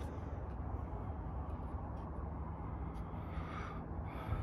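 Steady low background rumble with a faint, even hum and no distinct event.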